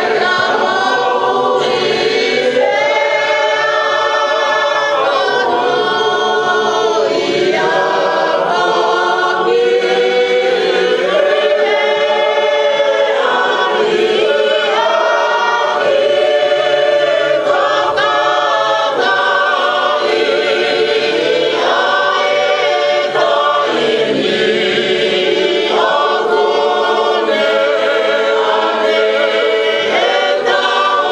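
A choir singing a hymn in long, held chords, with many voices together.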